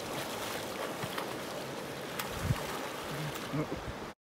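River water splashing as a swimmer kicks and strokes through it, over the steady rush of the flowing river.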